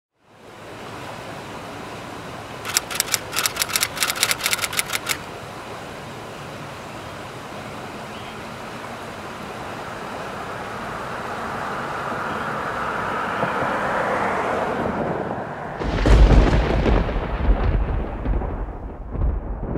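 Steady rain-like hiss with a quick run of sharp crackles about three seconds in, swelling until a sudden, loud, low rumble of thunder breaks about sixteen seconds in.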